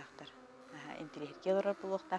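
Several Yakut khomus (jaw harps) played together: a buzzing drone with shifting overtones, louder from about one and a half seconds in.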